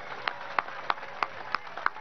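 Scattered handclaps from a few people in a crowd, single sharp claps about three a second rather than full applause.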